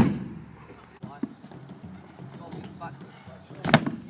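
Two sharp clacks of a stunt scooter's deck and wheels striking the ramp: a loud one right at the start and another shortly before the end, with faint voices in between.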